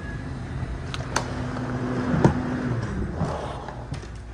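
Walk-in freezer door being opened: a few sharp clicks about a second in and a louder knock just after two seconds, over a steady low machinery hum.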